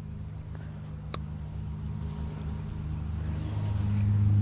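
Low engine hum of a motor vehicle, steady in pitch and growing louder toward the end, with a single sharp click about a second in.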